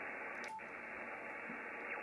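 Band noise from a Yaesu FTdx5000 HF receiver in upper sideband: a steady hiss, cut off above about 3 kHz by the receive filter, with the 10 m noise floor around S2.5. About half a second in there is a brief dropout and blip as the band is changed.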